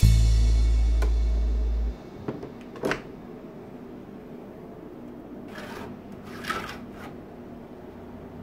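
A low sustained note of background music fades for about two seconds and cuts off. Then a wooden shelf platform with metal brackets is set onto a windowsill: one sharp knock, then soft rustling as its carpeted top is pressed and adjusted.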